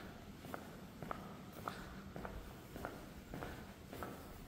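Faint footsteps at a steady walking pace, about two steps a second, on a hard tiled floor.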